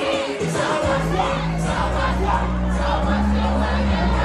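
Loud club music played by a DJ through a sound system, with a heavy bassline dropping in about a second in. A crowd sings and shouts along over it.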